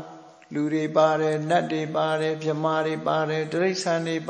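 A Theravada Buddhist monk's voice intoning a passage in a chanting monotone, the pitch held nearly level through the syllables. It begins about half a second in.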